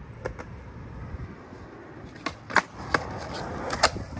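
Skateboard rolling on concrete with a steady low rumble, broken by a few sharp clacks in the second half. The loudest clack, just before the end, is the tail popping for a switch pop shove-it.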